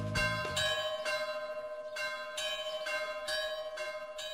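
Church bell of San Giorgio ringing in repeated strikes, about two a second, each strike ringing on into the next.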